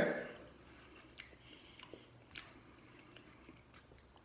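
Faint chewing of a mouthful of chicken burrito bowl, with a few light clicks of a metal fork in a paper bowl.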